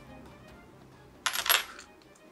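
A brief, bright metallic jingle, two quick clinks close together a little past the middle, over soft background music.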